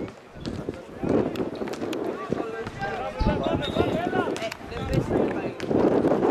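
Men's voices shouting and calling across a football pitch during play, with a few sharp knocks scattered through.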